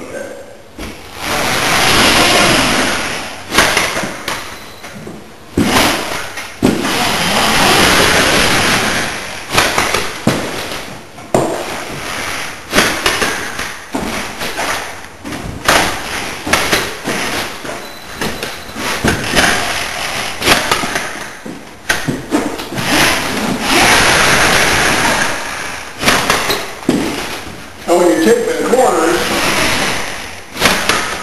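FinishPro automatic drywall taper in use: drawn-out scraping and rustling of tape and mud, broken by frequent sharp clicks and knocks from the tool.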